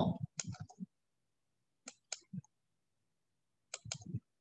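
Computer mouse clicks: a couple of short, sharp clicks about two seconds in and another pair near the end, with silence between.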